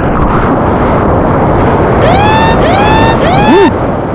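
Whitewater rushing and spraying past a surfboard riding a wave, with water and wind buffeting the board-mounted action camera's microphone as a loud, steady roar. About halfway through, three quick rising whistle-like tones come one after another.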